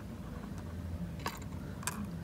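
Clear plastic lure box handled in a gloved hand, giving two light clicks in the second second over a low steady room hum.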